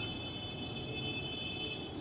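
Faint steady background hiss with a low hum and a thin, steady high-pitched whine; no distinct scraping or tapping stands out.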